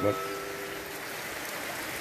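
Steady hiss of heavy rain with runoff water running in a drain.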